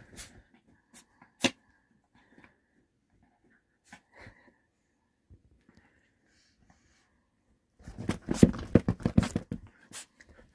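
A small dog playing with a plush toy on a fabric bench cushion: scattered soft clicks and one sharp tick about a second and a half in, then about two seconds of dense rustling and scuffling near the end.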